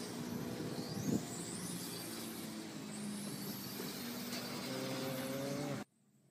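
Radio-controlled cars running on a track, their motors whining and rising in pitch again and again as they accelerate, over a steady lower hum. The sound cuts off suddenly near the end.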